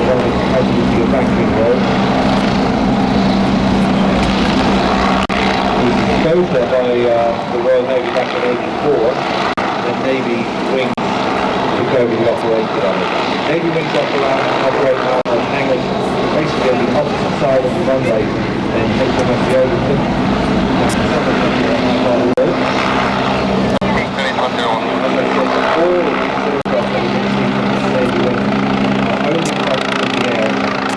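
Westland Wasp HAS1 helicopter in flight: a steady drone of its Rolls-Royce Nimbus turboshaft and rotor, with a steady low hum that drops back in the middle and returns near the end. Voices are heard over it in the middle stretch.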